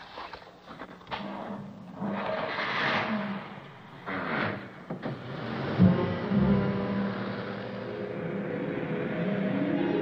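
A car's engine running and pulling away, heard as two swells of noise, with a sharp knock about six seconds in. An orchestral film score then comes in with long held notes and a rising figure near the end.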